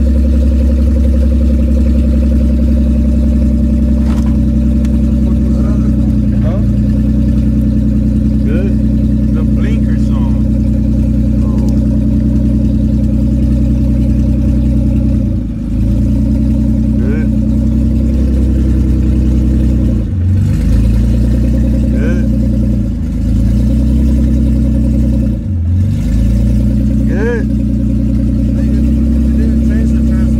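Infiniti car engine idling steadily. In the second half its speed sags briefly and recovers about four times, as when the automatic transmission is moved through the gears while standing still.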